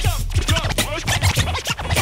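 Late-1980s Miami bass hip hop track: a DJ scratches a record on a turntable in quick back-and-forth strokes over the drum beat, with the steady bass dropped out.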